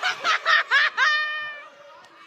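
High-pitched laughter in quick bursts, ending in one longer drawn-out note that fades away.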